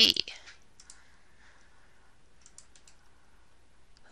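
A few faint computer mouse clicks, one about half a second in and a short cluster around two and a half seconds.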